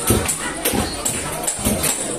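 Capoeira music: a pandeiro's jingles shaking steadily over deep atabaque hand-drum strokes.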